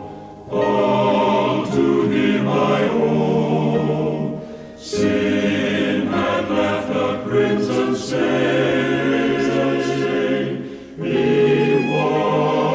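A choir singing in long, held phrases, with a short pause between phrases about every five seconds.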